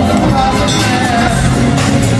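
Live pop music from a band with a horn section, played loud through a stadium sound system and heard from among the audience.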